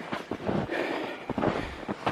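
Footsteps in snow, with irregular rustling of clothing and pack and the walker's breathing as he hikes.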